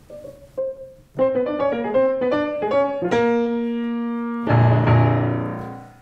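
Grand piano played: a couple of single notes, then a quick run of notes about a second in, a held chord at about three seconds, and a louder chord with deep bass near the end that rings and dies away.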